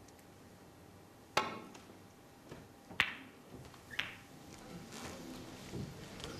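Snooker balls clicking: a cue tip strikes the cue ball about a second and a half in, and then come two more clicks, a sharp one about three seconds in and a softer one a second later. These are the cue ball striking the brown full and the brown running on into the blue.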